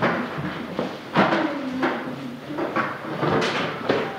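Classroom noise: indistinct voices and several sharp knocks and bumps of students moving about.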